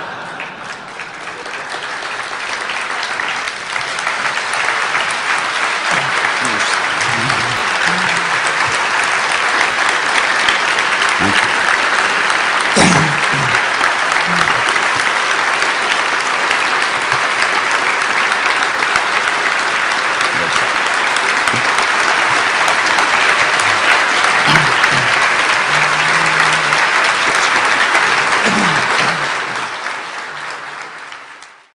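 Large audience applauding after a speech. The clapping builds over the first few seconds into a steady, sustained ovation with a few voices calling out, then starts to fade near the end.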